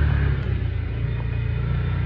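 Side-by-side UTV's engine running steadily while driving along a trail, a low drone heard from the driver's seat.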